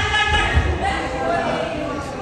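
Judoka landing on the mat after a throw: dull heavy thuds at the start and again about half a second in, with onlookers' voices over them in a large hall.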